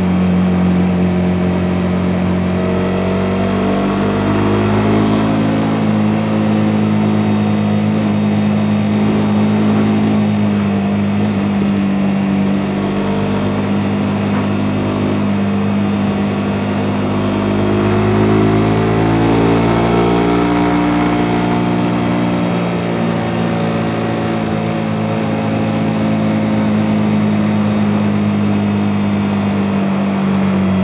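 Suzuki GSX-S150 single-cylinder engine running steadily while riding at road speed, with the revs rising and falling again about two-thirds of the way through.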